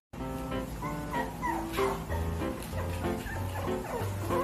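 Several puppies whining and yelping in short, high calls that come every second or so, over steady background music.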